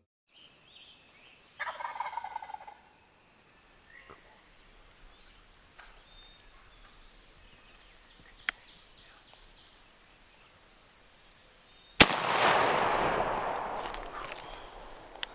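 A wild turkey gobbles about two seconds in, with faint songbird chirps after it. About twelve seconds in comes a single shotgun blast, the loudest sound, and its echo dies away over the last two seconds.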